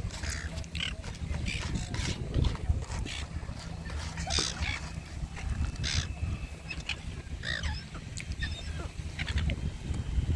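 Silver gulls calling in many short squawks, over wind rumbling on the microphone.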